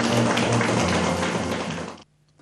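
Clapping mixed with room noise, fading out near the end.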